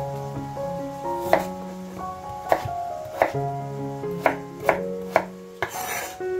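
Fissman chef's knife cutting through a raw peeled potato and knocking on a wooden cutting board, about six sharp knocks at uneven intervals.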